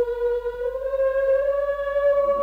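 Choir voices of a Greek Orthodox liturgy holding one long sung note in unison, which slides up a step about a second in.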